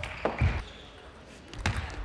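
Table tennis ball clicking off bats and the table: two sharp hits near the start, a short lull, then a quick run of hits near the end.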